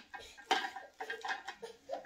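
Plastic parts of a hand-crank vegetable spiral slicer clicking and rattling as they are handled and fitted together, a series of light, sharp clicks.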